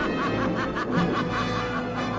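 A woman's villainous cackling laugh, a run of short rising-and-falling 'ha' notes that dies away about a second in, over dramatic orchestral music.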